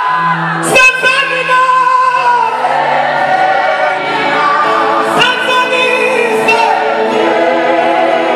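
A choir singing with musical accompaniment, the voices holding long notes over steady low tones.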